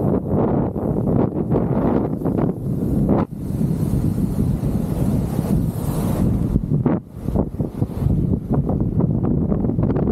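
Wind buffeting the microphone of a camera on a moving kite buggy: a dense, steady rumble with no pitch to it, dropping briefly about three seconds in and again about seven seconds in.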